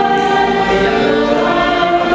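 Small mixed choir singing long held chords, accompanied by violins; the chord shifts about a second in.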